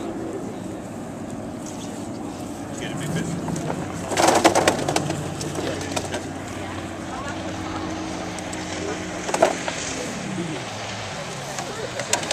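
Outboard boat motor running steadily in the background, then winding down about ten seconds in. A brief rattling clatter comes about four seconds in, with a shorter one near nine and a half seconds, over murmured voices.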